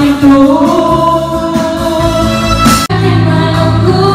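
Karaoke: a woman singing into a microphone over the song's backing track through the room's speakers, with a brief break about three seconds in.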